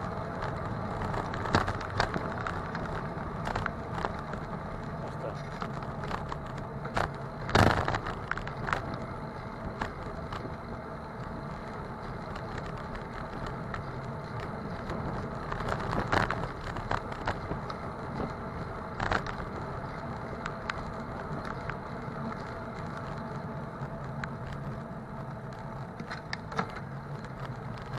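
Bicycle riding over city streets behind a slow car: steady rolling road and traffic noise, with scattered sharp knocks and rattles from bumps, the loudest about a third of the way through.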